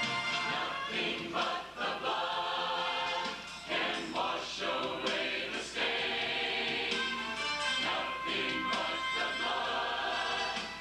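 A large mixed church choir singing together, many voices sustaining and changing notes without a break.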